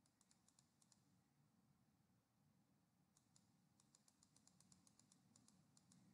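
Near silence with faint computer clicks: a few in the first second, then a quick run of clicks from about three seconds in, made while the on-screen document is being scrolled.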